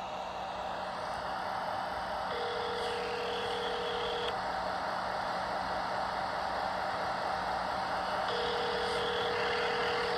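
Telephone ringback tone heard down a phone line: two rings, each about two seconds long and about six seconds apart, the second near the end, over steady line hiss and hum. It is the signal that the called phone is ringing.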